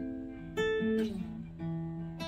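Acoustic guitar played solo, picked notes and chords ringing over one another, with a new one struck about every half second.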